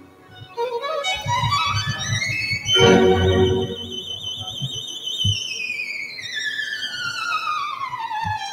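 Violin music with a lower accompaniment: the violin sweeps up to a high note, holds it with vibrato for about two seconds, then glides slowly down.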